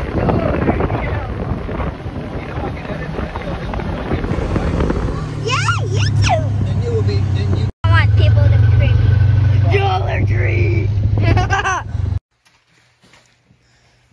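Side-by-side four-wheeler on the move: rough wind and engine noise for about five seconds, then a steady low engine hum with voices talking over it. The sound cuts off abruptly about twelve seconds in.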